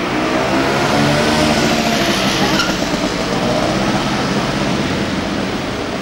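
Street traffic: a motor vehicle's engine running close by over a steady wash of road noise.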